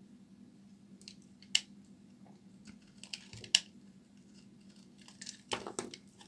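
Dry bar soap being cut with a blade: two sharp, crisp snaps as pieces break off, the first about a second and a half in and the second about two seconds later, then a short run of crackly scraping as flakes are cut away near the end.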